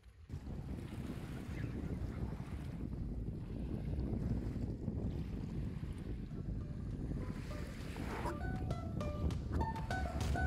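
Wind buffeting the microphone over small lake waves washing in the shallows at the shore. Music with single stepped notes comes in about eight seconds in.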